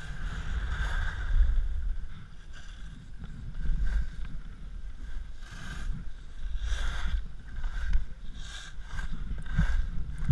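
Wind rumbling on an action camera's microphone while skiing downhill, with the repeated scraping hiss of skis carving turns on packed snow every second or two.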